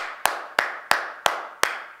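One person clapping hands in a steady rhythm, about three sharp claps a second.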